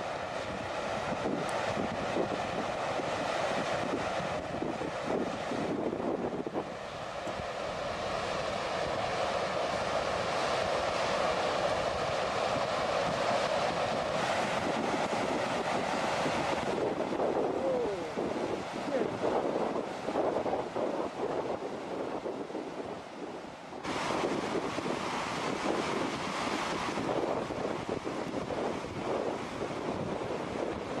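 Steady rushing noise of a flash flood of mud and debris surging past, mixed with wind buffeting the phone's microphone. It drops somewhat about halfway through and comes back louder a few seconds later.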